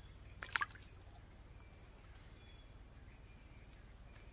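A small snakehead fish released by hand into shallow water: a brief splash about half a second in, then only a faint steady hiss.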